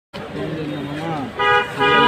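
A vehicle horn sounds twice, a short toot about one and a half seconds in and a longer steady blast near the end, over people talking.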